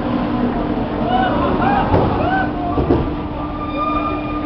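Amusement ride machinery running with a steady hum, with people's short shouts and whoops over it.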